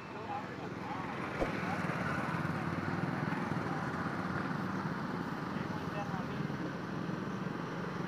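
Steady outdoor market background noise with faint, indistinct voices in the distance, and one sharp click about a second and a half in.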